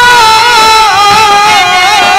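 Indian folk music for a Dhola kissa: a sustained, wavering melody line that slides between notes, played over dholak hand drums.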